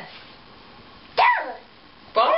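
A toddler's short, high-pitched vocal shout, falling in pitch, about a second in.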